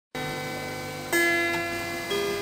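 Background music on an electric guitar: slow, clean single notes that ring on, with a new, louder note struck about a second in.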